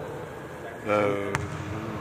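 A man's short wordless voice sound, held on one pitch about a second in. Just after it comes a single sharp bang of a basketball bouncing on the gym's hardwood court.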